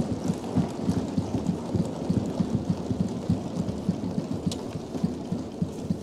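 Many parliament members thumping their desks together in a dense, uneven patter of low thuds, a show of approval as the Speaker's election is declared passed.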